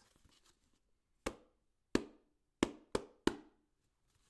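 Five hand taps on a cardboard tissue box, played as a rhythm: two evenly spaced taps, then three quicker ones.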